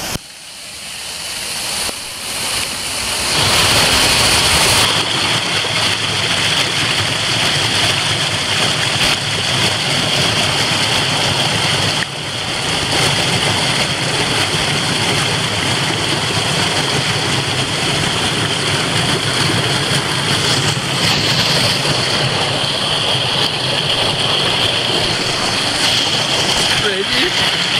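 Rushing water of a stream swollen by heavy rain, pouring over rocks in a small waterfall. It is a loud, steady rush that builds over the first few seconds.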